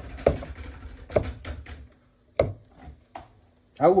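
A few sharp knocks and taps: three louder ones about a second apart with lighter taps between, followed by the start of speech at the end.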